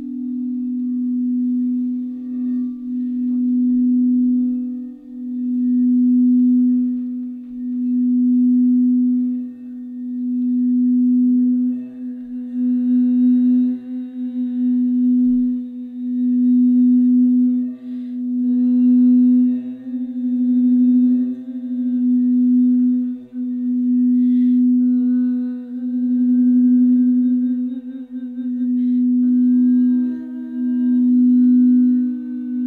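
Frosted crystal singing bowls played with a mallet: one low bowl holds a continuous tone that swells and fades about every two seconds. Higher bowl tones join in from about twelve seconds on.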